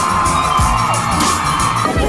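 Background music over a crowd, with one long high-pitched yell held for about two seconds that cuts off suddenly near the end.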